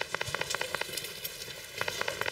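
Quick running footsteps on paving stones: a rapid patter of light, sharp clicks that thins out in the middle and picks up again near the end.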